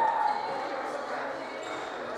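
Squash rally: rubber-soled court shoes squeak sharply on the hardwood floor as a player lunges, with the ball's hits sounding in the enclosed court.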